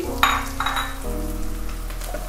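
Diced onions sizzling in hot oil in a wok, a hiss strongest in the first second, over background music with sustained notes.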